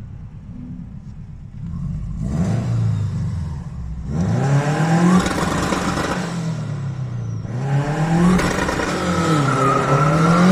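Car engine heard from inside the cabin, quiet at first, then revving up under acceleration from about two seconds in. Its pitch climbs, falls back and climbs again about three times as the car pulls away.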